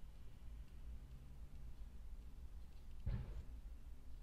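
Faint low hum with a single short click or knock about three seconds in.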